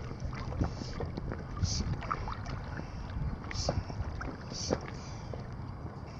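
Wind on the microphone and choppy water lapping against a small boat's hull, with scattered small ticks and a few brief splashy hisses.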